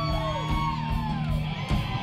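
Live rock band playing: drum kit and electric guitar, with a high wailing line that bends up and down above them.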